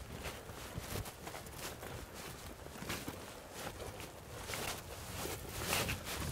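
Two people in wading boots walking over a dry river-cobble gravel bar: a continuous run of irregular crunching steps on loose stones.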